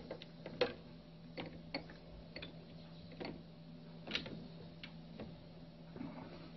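Light, irregular plastic clicks and taps, about a dozen spread unevenly, from a hand handling a water-electrolyser unit clipped onto a glass. A faint, steady low hum runs underneath.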